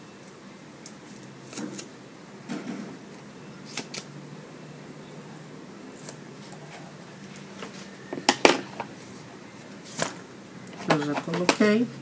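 Scattered small clicks and taps of hands working scissors and pressing strips onto a board on a cutting mat, the sharpest a quick cluster of clicks about eight seconds in. A woman starts speaking near the end.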